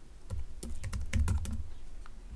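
Typing on a computer keyboard: a quick run of keystrokes, a word being typed out.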